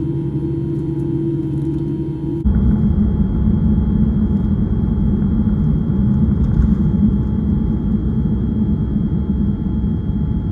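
Airliner cabin sound, first a steady low hum while the aircraft sits on the ground being de-iced. About two and a half seconds in it cuts abruptly to the louder, steady rumble of the jet engines at takeoff power as the plane rolls and lifts off.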